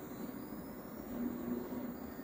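Quiet, steady low background rumble with no distinct event.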